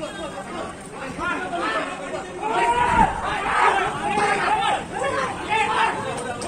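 A crowd of people shouting and talking over one another in a scuffle, several voices at once, growing louder about halfway through. A dull thump sounds about three seconds in.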